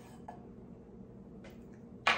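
Spoon stirring dry powder in a ceramic bowl, faint, with two light ticks about a second apart.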